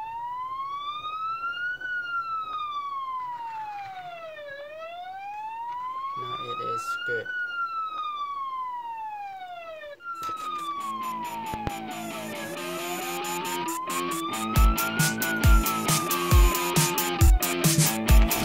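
Electronic police siren wailing, slowly rising and falling in pitch, about five seconds to each full rise and fall. About ten seconds in, the wail breaks off and restarts from the top of its sweep. In the last few seconds, music with a heavy regular beat comes in under it.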